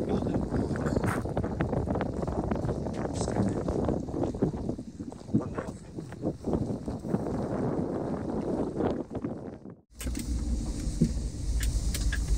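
Gusty wind noise on the phone microphone by a lake. About ten seconds in, after a brief drop-out, it gives way to the steady low road rumble inside a moving car or van.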